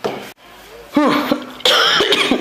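A woman coughing in short noisy bursts, one right at the start and a louder one near the end, with a brief voiced sound between them.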